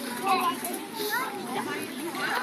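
Children's voices chattering and calling out over one another, with several high voices overlapping and no clear words.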